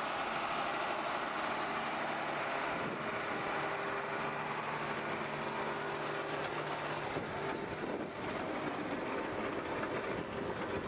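Tractor engine running steadily as it pulls a peanut digger-inverter through the rows, with the rattle of the digger lifting and turning the vines.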